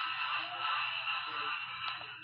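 A dense, tinny jumble of several cartoon video soundtracks playing over one another at once, with no single voice or tune standing out.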